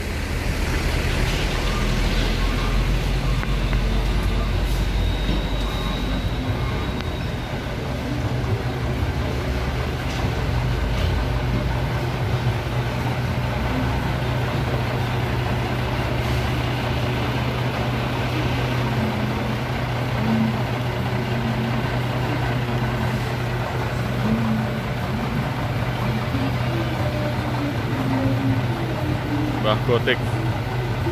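Mitsubishi Fuso FM215 truck's 6D14 inline-six diesel running as the truck pulls slowly up, with a heavier low rumble for the first several seconds, then settling to a steady idle.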